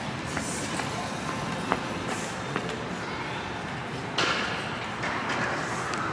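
Outdoor street ambience: a steady background hiss with a few faint clicks, and a louder rush of noise coming in about four seconds in.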